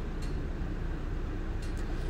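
Steady low rumble and hiss of background noise inside a pickup truck's cabin, with no distinct events.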